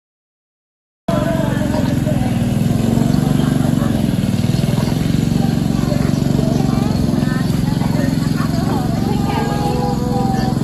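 Silent for about the first second, then a steady outdoor din: people talking in the background over a continuous low rumble.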